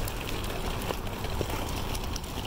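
Stroller and balance-bike wheels rolling over asphalt: a steady low rumble with a few small clicks.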